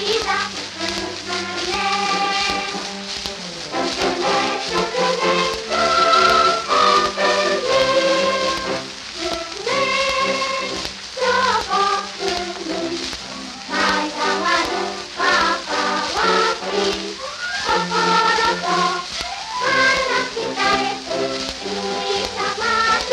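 Old 78 rpm shellac record playing a children's choir singing with orchestral accompaniment, with a steady crackle of surface noise.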